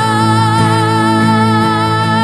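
A worship song in which a woman's voice holds one long high note with a slight vibrato over strummed acoustic guitar.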